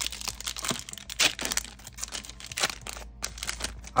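A foil trading-card booster pack being torn open and crinkled by hand, in a run of irregular crackles that are loudest about a second in and again later on.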